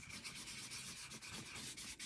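A small dye ink pad rubbed along the edges of a cardstock tag, a faint steady rubbing. The edges are being inked brown to give them an aged look.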